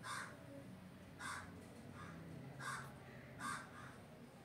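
Short harsh bird calls, four of them about a second apart, faint in the background.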